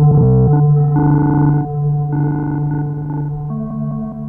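Electronic synthesizer drone of layered sustained pitched tones, with no drums. A brief glitchy stutter cuts through just after the start, brighter notes swell in and out twice, and a new low note enters near the end.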